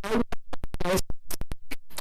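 A woman's voice chopped into short fragments by rapid audio dropouts: snatches of speech cut off abruptly, with clicks between them, a stuttering digital glitch in the recording.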